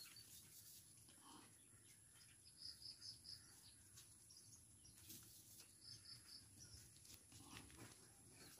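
Near silence, with faint small ticks of rabbits nibbling leaves and, twice, a quick run of three or four high peeps from a bird.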